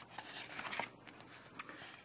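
Painted paper page of a small art journal being turned by hand: soft paper rustling, with one short crisp tick about one and a half seconds in.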